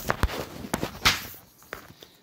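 A handful of irregular knocks and scuffs of handling and movement at a workbench, the loudest a little past the middle, dying away near the end.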